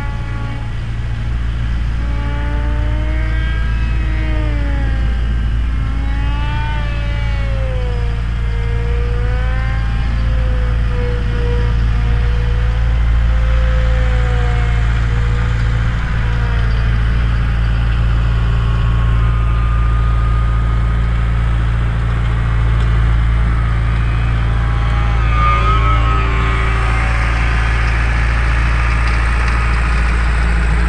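A ride-on lawn tractor's engine running steadily while mowing, loud and low. Over it, the high whine of a small electric RC plane's motor and propeller rises and falls in pitch through the first half and again near the end.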